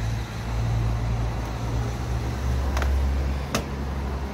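A motor vehicle engine running, a steady low hum whose pitch shifts down a little partway through, with two short clicks near the end.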